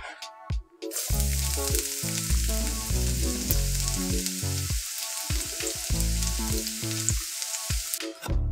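Hot oil sizzling in a wok, starting about a second in and going on steadily, over background music.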